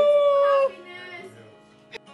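A person's long, held celebratory whoop, loud and steady in pitch, cutting off abruptly less than a second in; quieter background guitar music follows, with a short click near the end.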